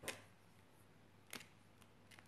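Near silence broken by a few faint, short clicks of plastic alcohol markers being handled on a wooden table: one right at the start, another about a second and a half in.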